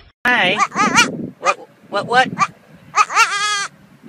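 A goat bleating over and over: a handful of short bleats, then a longer, quavering bleat near the end.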